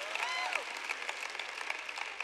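Audience applauding, easing off slightly, with one voice calling out briefly about half a second in.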